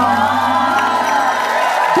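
Studio audience cheering and screaming as one, many high voices at once, with music underneath.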